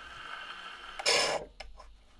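A portable gramophone's needle running in the run-out groove of a 78 rpm shellac record after the music has ended: a steady faint surface hiss, then a loud scraping swish about a second in, followed by a few softer clicks.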